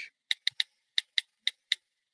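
Smartphone keyboard clicks: about seven light, unevenly spaced taps of someone typing a text message.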